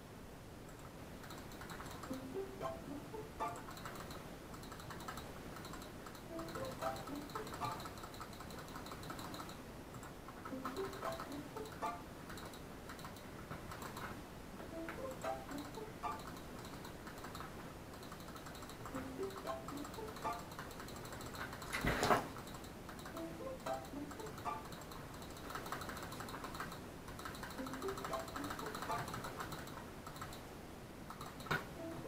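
Light background music of short plucked notes in a repeating melody, with one sharp knock about two-thirds of the way through.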